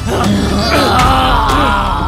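A man's strained groans and grunts while he is being choked, over loud dramatic background music.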